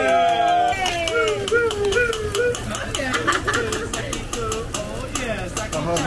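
Several people's voices calling and talking with a wavering, rising-and-falling pitch, with a quick run of light clicks or taps through the second half.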